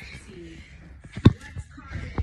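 A single sharp thump just past the middle, over faint voices in the background.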